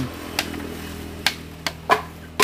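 Four irregular, sharp knocks of a hand tool striking bamboo slats while a woven bamboo lattice panel is being worked, the last knock the loudest.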